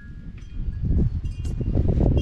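Wind rumbling on the microphone, growing louder about half a second in, with a few faint, thin high ringing tones over it.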